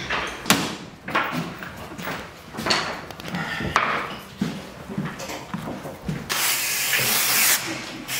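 Scattered wooden knocks and clatter of plywood parts being handled, then an aerosol spray can hissing steadily for about a second and a half near the end.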